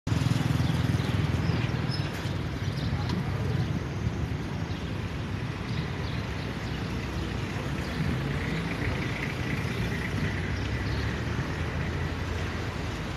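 Street traffic: cars passing on the road beside the square, a steady low rumble that is louder in the first two seconds.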